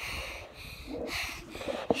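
A person breathing hard right at the microphone, two breaths about a second apart, with a knock near the end as a hand takes hold of the phone camera.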